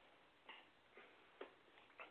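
Near silence, broken by three faint, short clicks about half a second apart.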